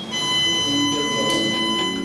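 Alarm of a laser combat-training (MILES-type) system: one steady, unbroken high electronic buzzer tone, the signal that the soldier's sensor harness has registered a hit.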